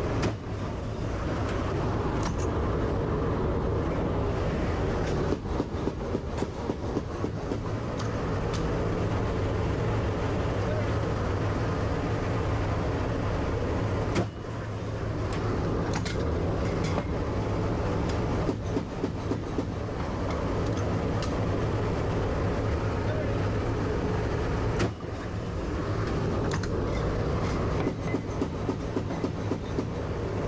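Steady drone of the AC-130J's turboprop engines heard inside the aircraft's cabin. Three single sharp bangs, each followed by a brief dip in level, fall near the start, about halfway and a few seconds before the end, and three short runs of rapid knocks come in between.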